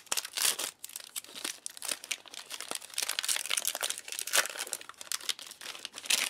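Plastic wrapper of a ration cereal bar crinkling and tearing as it is cut open with a knife and peeled off the bar, a dense run of irregular crackles.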